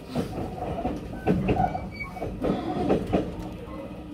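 Electric train running at speed, heard from inside the carriage: a steady rumble of wheels on rail with irregular knocks, and a few faint, brief squeaks around the middle.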